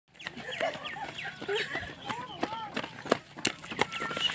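Birds chirping and calling in quick, repeated short falling notes, with a few sharp taps near the end.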